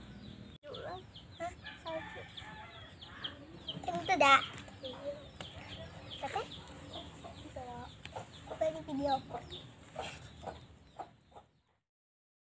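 Domestic chickens clucking, with short high bird chirps throughout. The sound stops abruptly near the end.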